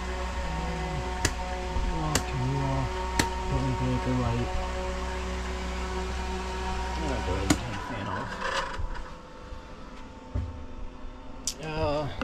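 A steady low machine hum aboard a sailboat, with a few sharp clicks, cuts off suddenly about eight seconds in as it is switched off.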